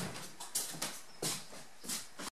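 Footsteps on a wooden plank floor: four short, soft scuffs of a person walking.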